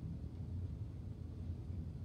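Steady low background hum and rumble with no distinct events.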